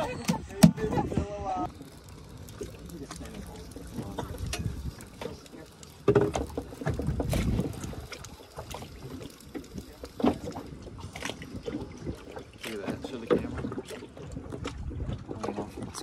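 Outdoor ambience on a small fishing boat at sea: a steady rumble of wind and water, with laughing voices for the first second or so and scattered knocks and clicks on the deck.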